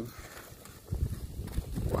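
Handling noise from a small black carrying case being picked up off a stone table in gloved hands: a quick run of low knocks and rustles starting about a second in.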